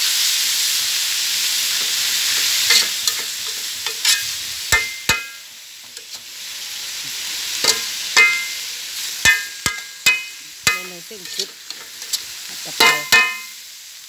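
Pork and holy basil sizzling in a wok while a metal spatula scrapes and stirs. About a dozen sharp metal clanks ring briefly as the spatula strikes the wok. The sizzle is loudest at first and dies down about five seconds in.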